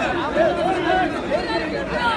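A large crowd of people talking and calling out at once, many voices overlapping with no single speaker standing out.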